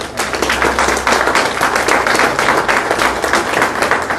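Audience applauding: many hands clapping at once, growing louder about a second in.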